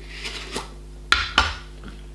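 Small metal tin being picked up and handled, giving three sharp clinks: about half a second, one second and a second and a half in.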